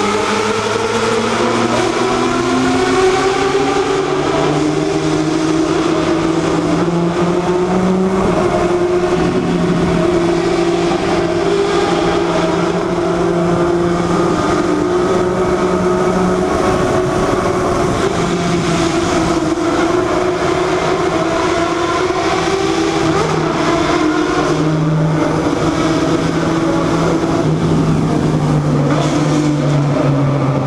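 Motorcycle engine pulling hard under acceleration, its pitch climbing over the first several seconds and then held fairly steady at high revs with brief dips, ringing off the walls of a road tunnel. Wind rush runs under it.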